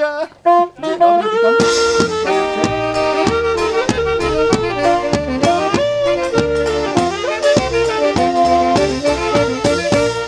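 Live folk wedding band of saxophone, accordion, double bass and drum strikes up a lively instrumental tune with a steady beat, about a second and a half in, just after a man's sung line ends. It is an instrumental interlude between the groomsman's sung verses.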